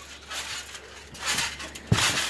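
Soft rustling and one dull, low thump just before the end.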